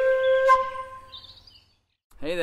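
Intro music: a flute-like wind instrument ends its tune on one held note that fades away over about a second and a half, leaving silence.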